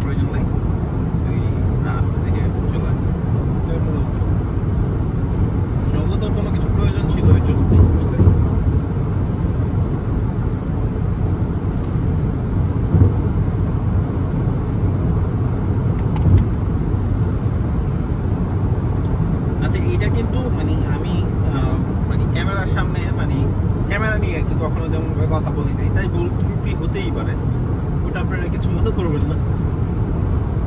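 Steady low road and tyre rumble heard from inside a car's cabin cruising at highway speed, with a few brief low thumps partway through.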